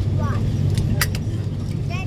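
Cabin noise of an Airbus A330-300 with Rolls-Royce Trent 772B engines, slowing after landing: a steady low rumble from the engines and the rolling airframe, with a sharp click about halfway and brief snatches of a voice.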